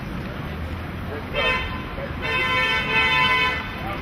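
A car horn honking in street traffic: one short toot, then a longer honk of about a second and a half.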